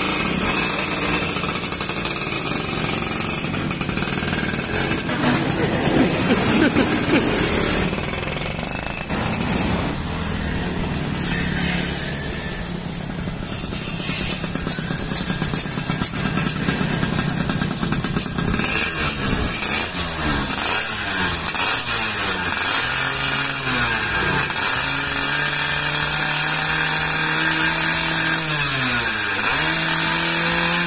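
Yamaha F1ZR two-stroke single-cylinder engine running, then, from about two-thirds of the way through, revved up and down again and again in quick blips, with one longer rev held near the end.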